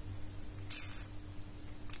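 A short pause: one soft, brief hiss of a quick breath just under a second in, over a faint steady hum.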